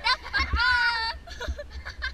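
A young person's high-pitched squeal held for most of a second, followed by softer laughing and chatter, with wind rumbling on the microphone throughout.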